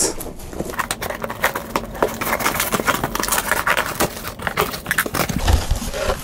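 Scissors cutting the packing tape on a cardboard shipping box and the flaps being pulled open: a run of irregular clicks, scrapes and crackles of tape and cardboard.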